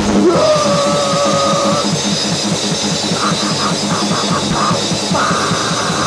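A noisecore band playing loud and fast: a drum kit with a dense run of strokes under distorted instruments. A high held note sounds for the first two seconds, then a run of short repeated stabs, then another held note near the end.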